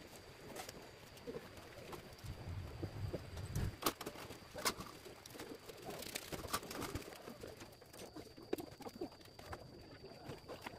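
Scattered light clicks and rustles of thin bamboo kite sticks and string being handled and tied, with a faint steady high-pitched whine underneath.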